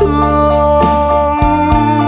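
Instrumental backing of a Vietnamese Christmas ballad: held chords over a bass line, with drum hits in the second half.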